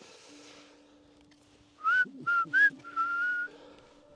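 A person whistling a short phrase: three quick notes, each sliding upward, then one longer held note.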